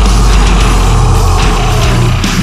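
Live deathcore band playing loud, heavily distorted guitars, bass and drums, with a heavy sustained low end that turns choppier near the end.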